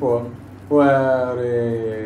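A man's voice: a short syllable at the start, then a long drawn-out vowel, held for about a second and a half with slowly falling pitch, in a chant-like way.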